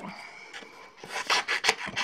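Scissors cutting into a sheet of patterned scrapbooking paper, a run of quick, crisp snips starting about a second in.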